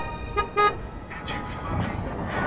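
A vehicle horn sounds two short toots, about a quarter second apart, followed by steady vehicle noise.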